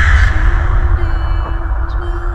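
Horror trailer score: a loud, deep boom hit under the title card, fading into a low rumbling drone with one steady held tone above it.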